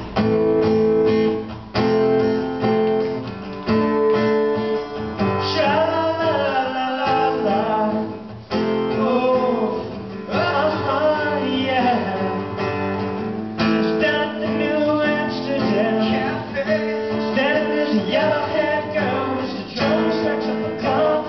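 Live acoustic guitar strumming chords, with a male voice singing a melody over it from about five seconds in.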